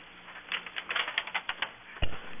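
Brief, scattered clapping from a few people: a quick, irregular run of sharp claps starting about half a second in and lasting about a second.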